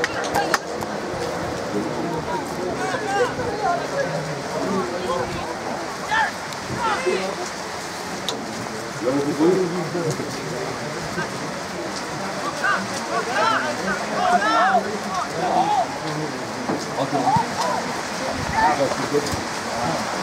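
Scattered distant shouts and calls from football players and spectators across the pitch, over a steady hiss.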